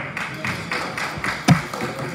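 A few people clapping in a large hall, sharp claps at about four a second, with a single louder thump about one and a half seconds in.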